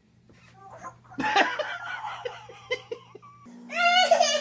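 Laughter from about a second in, an adult laughing with the baby, in short repeated bursts. Near the end a toddler gives a loud, high-pitched squealing laugh.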